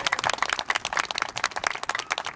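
An audience applauding, with many hands clapping densely and irregularly.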